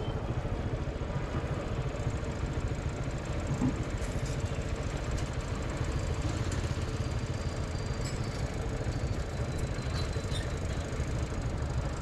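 Motorcycle engine running steadily at low revs, heard close up through a helmet-mounted camera.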